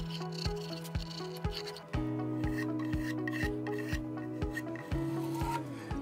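Scraping of a small hand block plane cutting a chamfer along the edge of a wooden guitar body, over background music with a steady beat of about two a second. The music's chord changes about two seconds in and again near the end.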